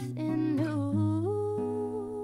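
Live acoustic song: a wordless sung line that slides down in pitch and then holds a long note, over acoustic guitar.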